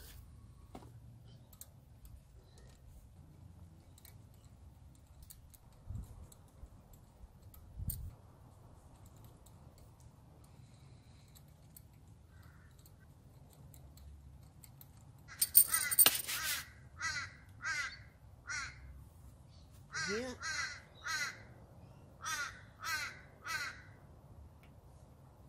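A crow cawing over the second half, after a loud first outburst, in runs of three calls about half a second apart. Earlier there are only two faint knocks.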